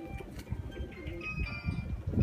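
Birds calling over a low, uneven rumble.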